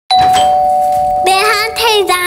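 A two-note ding-dong doorbell chime rings, a higher note then a lower one, both held for about a second. Then a child's voice starts in a wavering, sing-song call.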